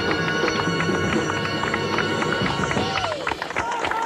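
Live jazz big band holding a closing chord, the horns sustained over drum and cymbal strokes. The held notes end about three seconds in, and crowd noise with rising and falling whistles follows.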